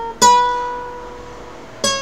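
Two single notes plucked on a classical guitar high on the neck, each ringing and fading: the first about a fifth of a second in, the second near the end and a step higher, played at the 8th then the 10th fret.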